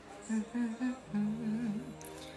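A woman humming a tune with closed lips, a few short notes and then a longer wavering one, over quiet pop music playing in the background.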